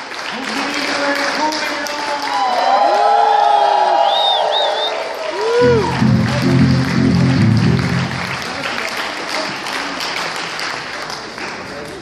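A congregation applauding, with voices calling out over the clapping. About six seconds in, low instrumental chords sound for roughly two seconds.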